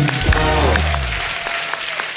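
Studio audience applauding over a short music sting, with a deep bass hit about a quarter second in that fades within a second.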